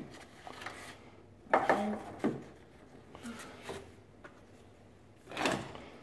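Plastic spice jars being handled on a door-mounted spice rack: a few short knocks and rattles, the loudest about one and a half seconds in and another near the end.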